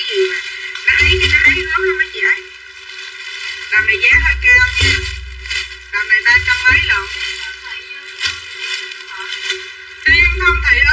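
A voice talking, with background music.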